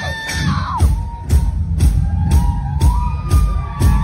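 Live pop band music recorded on a phone from the audience, loud: a steady beat about two a second with a sliding, held melody line over it.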